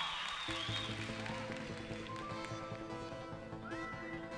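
A live band's song intro starts about half a second in: sustained keyboard notes over a steady bass line, with a lead note gliding up near the end.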